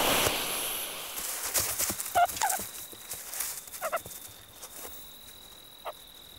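Brief animal calls: two short ones about two seconds in and another near four seconds, after a loud noisy rush at the start that fades away. A faint steady high tone sets in during the second half.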